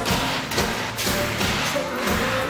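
Live pop band music with crowd noise, cut across by two loud hissing blasts from a stage CO2 fog jet.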